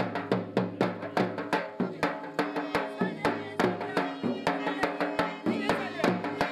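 Balochi folk music: a quick, steady drum beat of about four strokes a second under a sustained melody.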